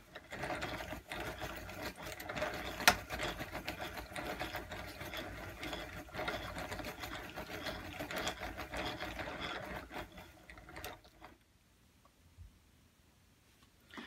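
Hand-cranked Royal cone winder whirring and clicking as it winds sock yarn off a turning wooden umbrella swift, with one sharp click about three seconds in. The winding stops about eleven seconds in.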